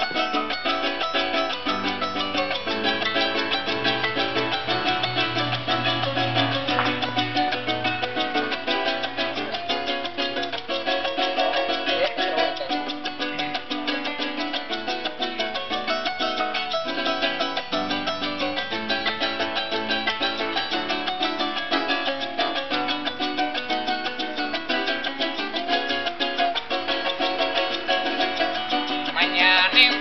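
Venezuelan llanero ensemble playing an instrumental introduction: an arpa llanera with its bass line and melody, a strummed cuatro, and maracas, in a steady, even rhythm.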